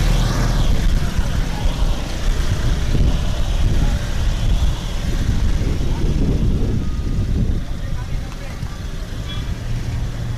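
Roadside street noise: motor traffic with a steady low rumble and indistinct voices in the background.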